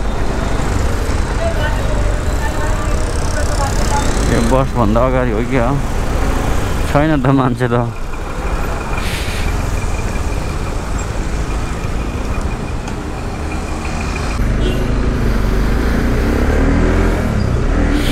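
Motorcycle engine running with road and wind noise while riding through traffic, a steady low rumble.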